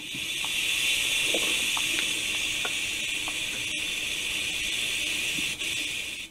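A steady hiss that fades in and fades out again near the end.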